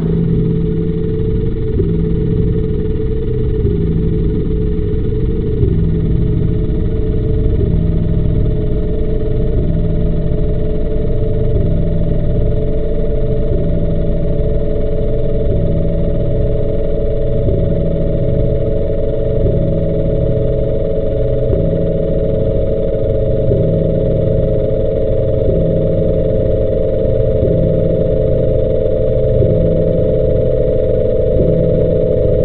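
Muffled synthesizer music with a repeating low bass pattern. A sustained high tone enters about five seconds in and holds, sinking slightly in pitch.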